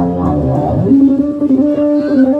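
Live rock band playing on electric guitars and bass: held notes, with a low note sliding up in pitch about a second in, then sustained guitar notes.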